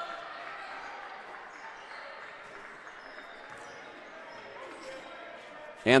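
Gymnasium game sound during college basketball play: a steady murmur from the crowd with a basketball being dribbled on the hardwood court. A man's voice begins right at the end.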